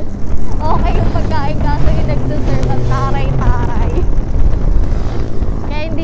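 Heavy wind buffeting on the phone's microphone and road noise from a moving motorcycle, with a voice heard over it now and then.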